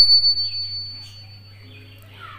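Nattuvangam talam (Carnatic hand cymbals) ringing after a single stroke: one clear high tone slowly dying away.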